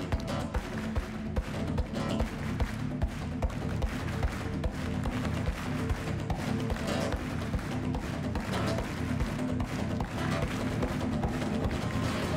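Two acoustic guitars played live in a flamenco-rock style: a driving strummed rhythm with evenly spaced sharp percussive hits under sustained low notes.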